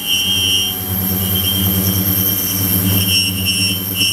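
Ultrasonic cleaning tank running with its water agitated: a steady low hum under fixed high-pitched whining tones. One wavering whine drops away about a second in and comes back near the end.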